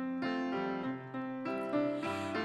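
Piano playing a short solo passage of held chords and notes, changing several times.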